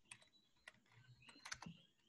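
Faint computer keyboard keystrokes: a few scattered clicks, then a quick run of several about one and a half seconds in.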